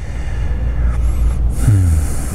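Loud rumbling, rustling noise from a clip-on lapel microphone rubbing against a shirt as the wearer shifts and leans over his notes.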